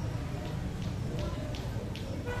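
A basketball bouncing on a concrete court, a run of soft dribbles about three a second, over a background of voices.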